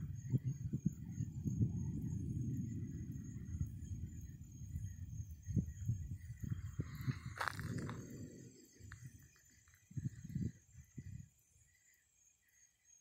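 Thunder rolling in a low, crackling rumble that fades out about eight seconds in, with a sharp click about seven and a half seconds in.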